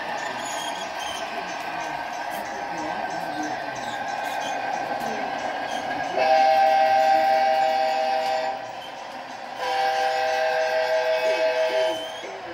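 Model diesel locomotive's sound system playing its engine running sound, then two long air-horn blasts, each a steady chord of several tones lasting about two to three seconds, with a short gap between them.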